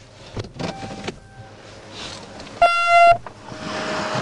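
A single loud electronic beep lasting about half a second, a little past the middle, over a steady hiss, with a few sharp clicks in the first second.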